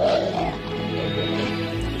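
A dog growling briefly at the start, over steady background music.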